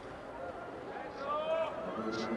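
Steady background noise of an outdoor sports venue, with a faint voice speaking from about a second in.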